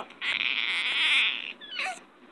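Four-month-old baby's breathy, excited squeal lasting about a second, then a short falling coo near the end.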